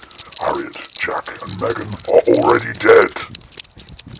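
A person's voice, its words not made out by the recogniser, loudest about two to three seconds in, over a scatter of short clicks.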